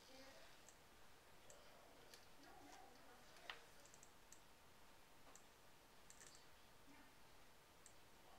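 Near silence: room tone with faint, scattered small clicks, one a little sharper about halfway through.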